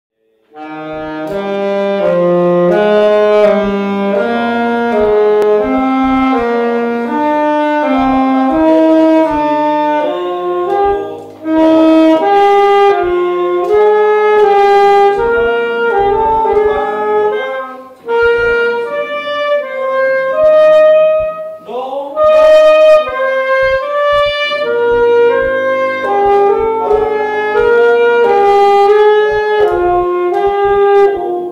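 Saxophone playing a melody of separate held notes, in phrases with short breaks about eleven seconds in, about eighteen seconds in, and again a few seconds later.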